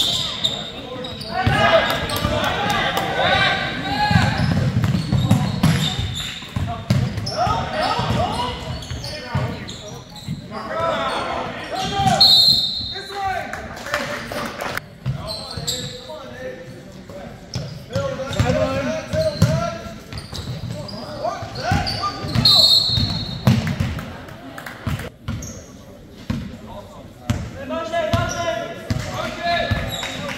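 A basketball game on a hardwood gym floor: the ball bouncing and thudding, with voices of players and spectators echoing through the hall. A few short high squeaks stand out about twelve seconds in and again about ten seconds later.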